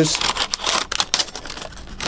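Protective paper wrapping crinkling and rustling as it is peeled off an electric guitar's neck and fretboard, in irregular crackly bursts.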